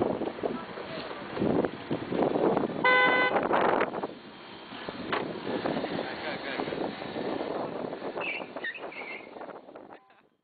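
A car horn gives one short, single-pitched toot about three seconds in, over people talking.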